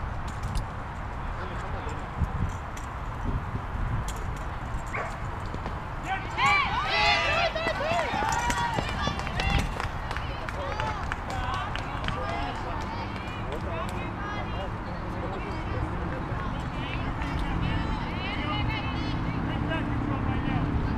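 Voices of softball players and spectators calling out, loudest in a burst of shouting about six to nine seconds in, over a steady low rumble.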